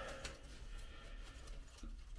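Faint handling of a rusty propeller-shaft universal joint by a gloved hand: a couple of light clicks, one shortly after the start and one near the end, over a low steady hum.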